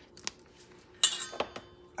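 Kitchen handling clinks: a faint click, then about a second in a sharper clink with a short metallic ring and one more small click, as spice containers are handled beside a stainless steel mixing bowl.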